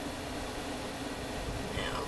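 Steady background hiss with a low, constant hum: room and recording noise while small pieces of paper and tape are handled quietly.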